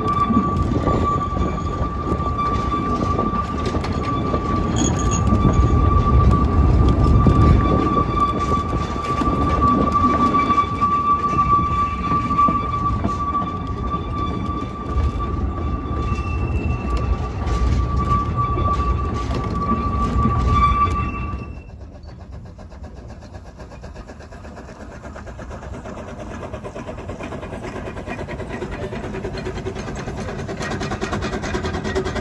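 Narrow-gauge passenger carriage running behind a steam locomotive, heard from on board: a steady low rumble of wheels on track with a constant high-pitched squeal over it. About two-thirds of the way through it cuts off suddenly, and a much quieter train sound takes over, slowly growing louder as a train approaches along the line.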